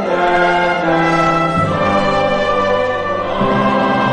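Church choir singing with instrumental accompaniment, long held chords that change about one and a half seconds in and again near the end.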